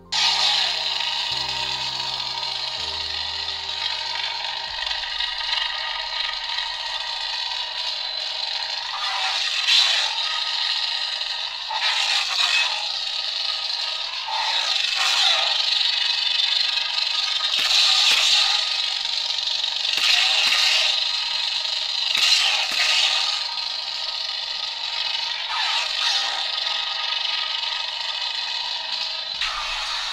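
LGT neopixel lightsaber's sound board playing the Kylo Ren sound font. The blade ignites, then runs on as a steady crackling, unstable hum, with short swells each time the saber is swung in the second part.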